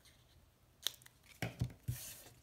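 Scissors snipping a corner off a small piece of file-folder cardstock: one sharp snip a little under a second in, followed by a few dull knocks on the tabletop as the scissors are set down.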